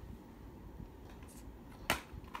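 Low, uneven handling rumble with a few faint ticks, then a single sharp click near the end.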